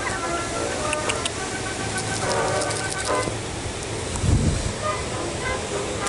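Wild turkeys calling in short pitched bursts while feeding, with scattered light clicks and one low thump a little past four seconds in.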